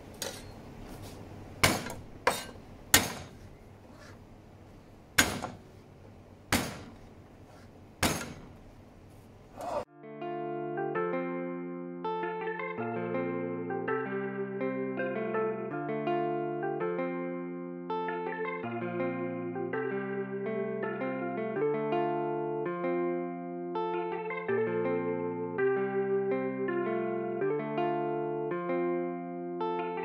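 A knife striking a plastic cutting board about nine times at irregular intervals as garlic cloves are crushed and chopped. About ten seconds in, the sound cuts over to background music with plucked and keyboard-like notes over a steady bass line.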